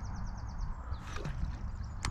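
Outdoor riverbank ambience: a steady low rumble of wind on the microphone, with a faint rapid high trill of quick notes that fades out early, and a soft hiss that rises about a second in.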